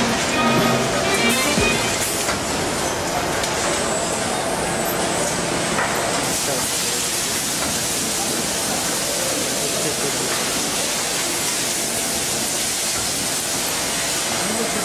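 Background music fading out in the first couple of seconds, giving way to the steady hissing running noise of a horizontal packaging machine and its surroundings.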